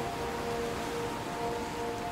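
Soft, steady ambient background music: a few sustained held tones over a light even hiss.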